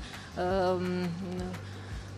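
A woman's voice holding one long drawn-out vowel for about a second, wavering at its start, over a steady low hum.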